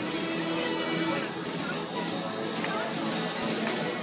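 Carousel band-organ music playing steadily in sustained chords, with people talking nearby.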